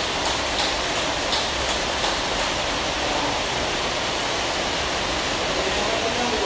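Table tennis ball clicking off paddles and the table in a short rally, a few sharp ticks in the first two seconds, over a steady loud rushing noise.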